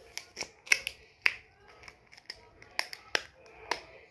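Irregular sharp clicks and taps, about eight to ten in four seconds, from small hard plastic things being handled close to the microphone.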